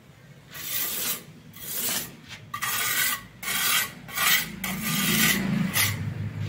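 Wooden hand float rubbing over fresh cement plaster on a sunshade edge: a run of rasping back-and-forth strokes, about eight of them, beginning about half a second in.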